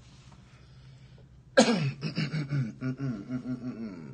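A man's voice: after a quiet start, a sudden loud vocal sound about one and a half seconds in, falling in pitch, then a quick run of short rhythmic voiced sounds.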